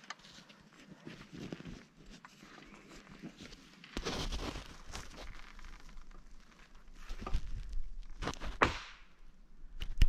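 Footsteps and rustling of brush and branches on the forest floor, uneven and irregular, with a low rumble on the microphone from about four seconds in and a few sharper knocks near the end.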